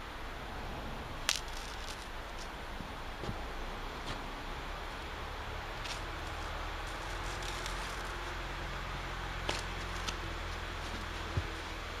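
Light handling noise as foam pool noodle is worked onto a PVC-pipe leg: a few scattered sharp clicks and soft rubbing, over a steady low hum that grows a little louder in the second half.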